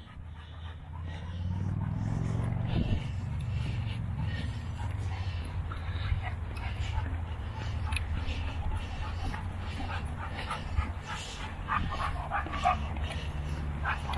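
A dog whining and yipping now and then, over a steady low rumble of wind on the microphone.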